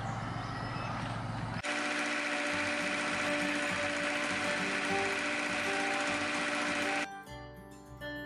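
A boat's inboard diesel engine running steadily, heard close up in its engine bay, with music playing over it. The engine sound cuts off abruptly about seven seconds in, leaving the music alone.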